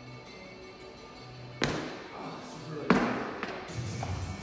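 Two thuds about a second and a half apart, the second louder: a lifter's shoes stamping on a wooden lifting platform during a split-jerk footwork drill with a loaded barbell. Background music plays underneath.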